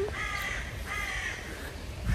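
A bird calling twice, each call about half a second long.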